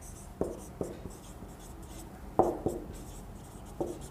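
Marker pen writing on a whiteboard: faint scratching strokes broken by about five short, sharp taps as the tip meets the board.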